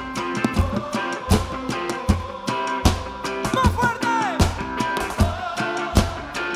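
Live band music from a folk-pop group: a heavy drum beat lands about every three-quarters of a second under electric guitar, bass and keyboard. A singing voice slides and wavers in pitch around the middle.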